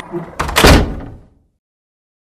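A loud slam-like impact about half a second in, a quick first knock followed by a louder hit, dying away within a second into silence.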